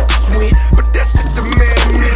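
Backing music with a heavy bass beat, with skateboard wheels rolling on pavement beneath it.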